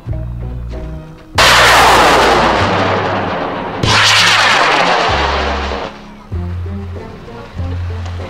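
Two high-power model rocket motors roaring at launch, about two and a half seconds apart, each starting suddenly and fading over about two seconds, over background music.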